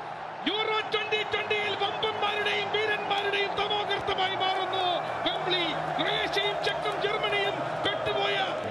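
A man's high-pitched, excited Malayalam football commentary, shouted in long drawn-out calls over a steady background hiss.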